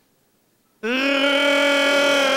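A loud, long howling call held on one steady pitch, starting suddenly about a second in. It is made as a strange and possibly inappropriate attention-getting noise.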